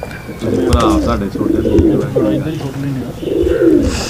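Sialkoti domestic pigeons cooing in a loft, one call after another with several overlapping.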